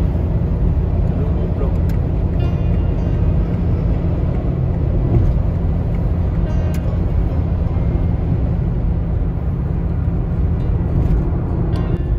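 Steady low road rumble of a car driving at motorway speed, heard from inside the cabin: tyre and engine noise.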